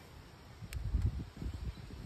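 Faint, irregular low rumble and soft thumps of a phone being moved and handled outdoors, with one small click about two-thirds of a second in.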